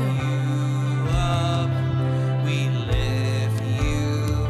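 Live worship band music: a woman singing long held notes over guitar and a sustained low bass note, which steps down in pitch about three seconds in.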